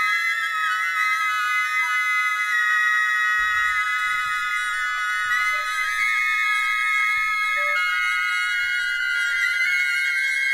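Flutes and saxophones of a large improvising orchestra holding a dense cluster of long, high notes that shift slowly, with almost no bass beneath.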